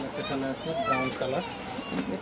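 Voices talking in the background, softer than the main speaker's narration.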